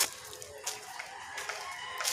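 A sharp click right at the start, then a long animal call held for about a second and a half.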